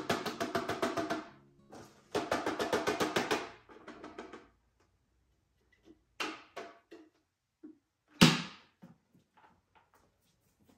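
Dust and debris rattling and clattering out of a Shark upright vacuum's clear plastic dust canister as it is shaken over a bin, in two bursts of about a second and a half each. A few light knocks follow, then one sharp loud snap near the end as the canister's bottom flap is shut.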